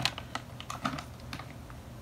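Handling of plastic packaging and items: a few light, irregular clicks and crinkles as things are picked up and set down.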